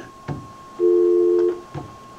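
Telephone dial tone on the studio's phone line: a steady two-note hum, heard once for under a second in the middle, with a click before and after it as the line is switched.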